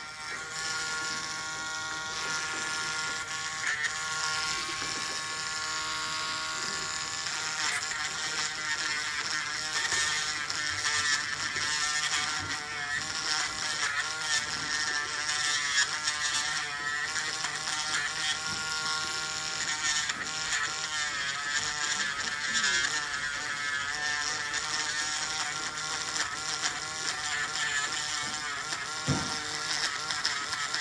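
Podiatry nail drill running steadily with a buzzing whine as its burr files down the thick, scaly skin and nail debris on the toes; the pitch wavers as the burr bears on the toe.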